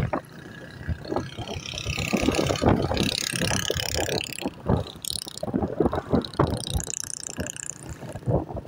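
Handling noise on a phone's microphone as the phone is swung about: an irregular run of rubbing, scraping and knocking clicks, with a rushing hiss for a couple of seconds in the middle.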